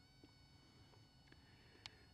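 Near silence: a faint steady high-pitched whine, with one soft click near the end.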